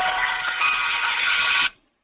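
Sound effect of an animated logo intro playing from a tutorial video: a dense, noisy swell with a few held tones, which cuts off suddenly near the end.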